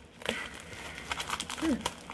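Packaging crinkling and rustling in irregular small crackles as it is worked at by hand to get it open, the mailer tightly sealed. A short "hmm" near the end.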